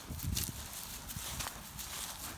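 Footsteps crunching through dry, dead grass in an uneven walking rhythm, with a few sharper crunches about half a second and a second and a half in.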